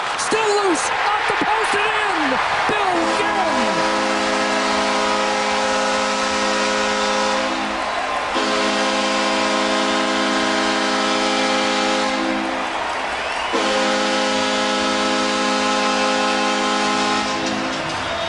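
Arena goal horn sounding three long, steady blasts over crowd noise, signalling a home-team goal.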